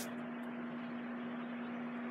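Steady background hum with a faint hiss: a single low, even tone with room noise and no distinct events.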